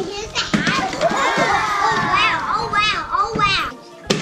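Several children shouting and squealing at once, loud and overlapping, with no clear words.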